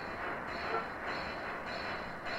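Steady rushing noise with no speech, under a distorted video transition.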